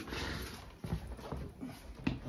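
A few footsteps knocking on a laminate floor, with faint rustling in between.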